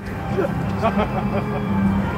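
Crowd ambience: faint distant voices over a steady low hum.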